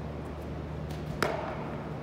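One sharp smack of a baseball into a first baseman's glove about a second in, over a low steady hum.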